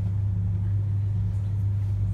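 A steady low hum with no other sound.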